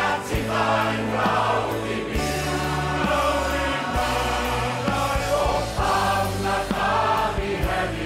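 A choir singing with instrumental backing, over held bass notes.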